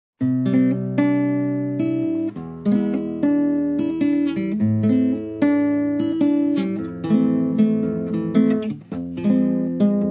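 Background music: an acoustic guitar picking an instrumental intro, starting suddenly just after the beginning.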